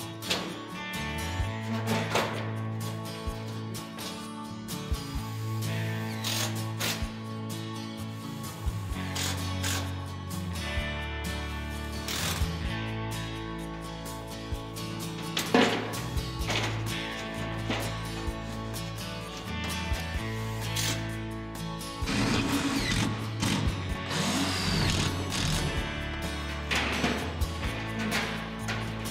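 Background music with a steady bass line, with intermittent knocks and power-tool noise from the work mixed in underneath.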